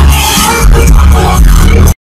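Live concert music played very loud over a PA, with heavy bass and a singing voice. The sound cuts off suddenly just before the end.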